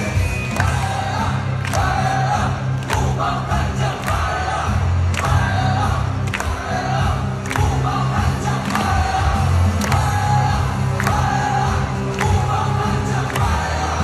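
Stadium cheer music over the loudspeakers with a heavy bass line and the crowd chanting along, a sharp accent landing a little over once a second.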